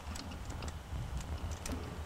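Buttons on an outdoor gate call-box keypad being pressed by hand, a quick irregular series of clicks.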